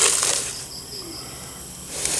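Insects chirping steadily in the background, with a brief soft rushing noise at the start and another near the end.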